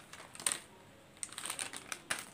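Cut-open foil snack packet being shaken out, its crinkling foil and light crisp snacks falling onto a pile as a scatter of small clicks. There is a quiet pause about halfway through, then the clicks resume.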